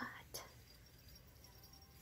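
Near silence with a faint steady low hum, broken by one brief click about a third of a second in.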